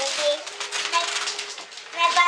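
Wrapping paper crinkling and tearing as a present is unwrapped by hand, a quick crackle of paper that eases off in the second half.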